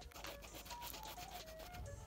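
Faint scratching and rubbing of a white oil-based paint marker's tip worked over Boost foam midsole, painting the discoloured foam white. A soft melody of background music runs under it.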